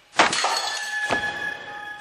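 A sudden crash as a dish hits the floor, followed by ringing, with a second clatter about a second in.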